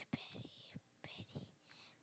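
Faint whispered speech heard over a video-call connection.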